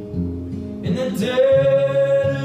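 Acoustic guitar being played, with a man's singing voice coming in about a second in and holding one long note.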